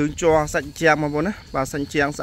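A man talking steadily, with a faint, steady high-pitched tone beneath the voice.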